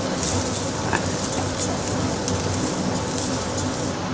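Rice toasting in hot oil with wilted onions and shallots in a copper pan, sizzling steadily as it is stirred with a wooden spoon. A faint click about a second in.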